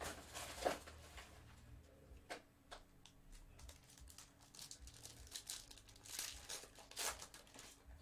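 Foil wrapper of a Panini Spectra football card pack being torn open and crinkled by hand: faint, irregular crackles and rips.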